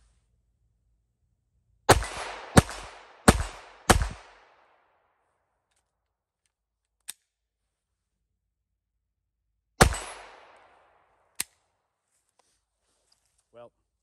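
Glock 44 .22 LR pistol with an aluminum aftermarket slide firing four quick shots about two-thirds of a second apart, then after a pause a single shot, with a couple of sharp clicks in between. The halting string goes with stoppages that the shooter puts down to .22 rounds picked up off the ground.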